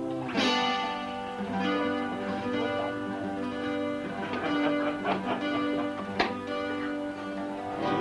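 Double-neck acoustic guitar strummed, its chords left to ring, with a loud strum just after the start and another sharp stroke about six seconds in.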